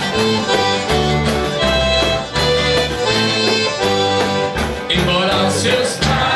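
Live band music led by a piano accordion playing the melody, over acoustic guitar, electric bass and a tambourine keeping a steady beat.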